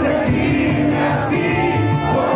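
Live band playing with singing and many voices singing together, heard loud from within the concert crowd.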